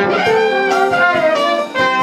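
Jazz band playing live: trombone, trumpets and saxophone play together over piano, with regular drum hits under the horns.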